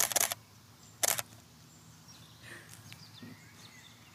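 A DSLR camera's shutter firing in a rapid burst that ends about a third of a second in, then a second short burst about a second in. Fired repeatedly just to fire, so the model gets used to the sound of the release. Quiet ambience with a few faint bird chirps follows.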